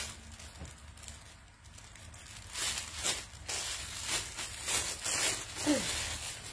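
A clear plastic garment bag crinkling and rustling in a run of bursts, starting about halfway in, as a piece of clothing is pulled out of it.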